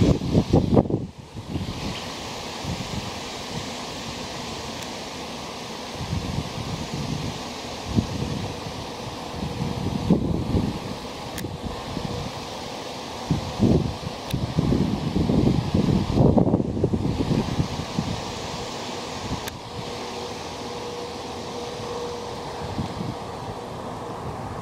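A honeybee swarm flying overhead: a steady hum mixed with wind noise, and single bees buzzing close past the microphone several times, their pitch sliding up and down as they pass, most of all around the middle.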